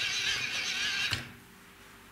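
Hand-crank dynamo of a Goal Zero Lighthouse 400 LED lantern being turned to generate power for its battery: a geared whirring whine that wavers in pitch with the cranking speed, dying away a little over a second in as the cranking stops.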